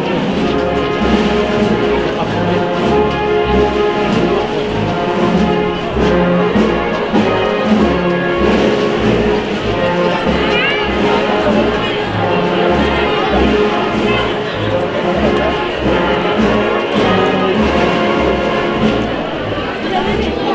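A Spanish wind band (banda de música) playing a processional march, with sustained brass and woodwind chords over low drum beats, and crowd voices underneath.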